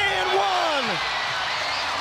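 A single man's voice calls out a drawn-out wordless exclamation, falling in pitch over about a second, above the steady noise of an arena crowd.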